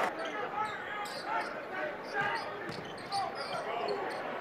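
Basketball game sound from courtside: a ball bouncing on the hardwood and short sneaker squeaks over steady arena crowd noise.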